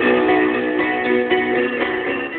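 FM radio receiver playing a station's music, with several held notes.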